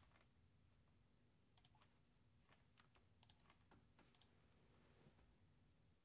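Near silence broken by about a dozen faint, scattered computer clicks from a mouse or keyboard, the sound of a file being opened and screen-shared for playback.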